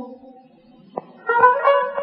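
Instrumental Persian classical music in Dashti mode. A held note dies away to a near-quiet gap, a single plucked note sounds about a second in, and a new plucked-string phrase begins shortly after.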